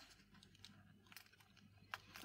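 Near silence, with a few faint clicks and taps of fingers handling a small plastic Bluetooth earbud charging case; the sharpest click comes near the end.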